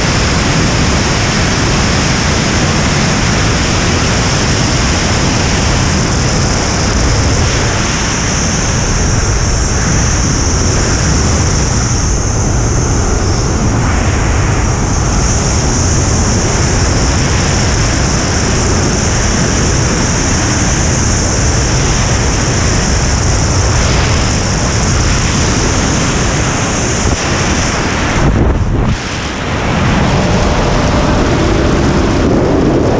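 Loud, steady wind roar from the rushing airflow over a camera in wingsuit freefall, with a steady high hiss over it. It dips briefly near the end.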